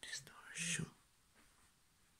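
A person whispering briefly for about a second, breathy and hissy with little voice in it.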